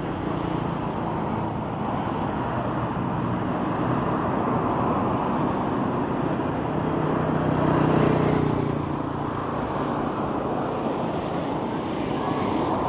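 Road traffic passing close by: motor vehicle engines and tyre noise on a paved highway, with one vehicle swelling louder as it passes about eight seconds in.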